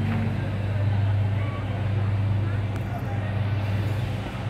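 A steady low hum runs under faint, distant voices and street noise.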